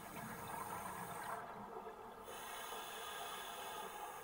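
Scuba diver breathing through a regulator, heard underwater: a low rush of exhaled bubbles, then the regulator's hiss, which breaks off for about a second partway through.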